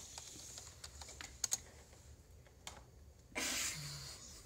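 A few scattered computer keyboard key clicks, spaced irregularly, then a brief rush of noise near the end.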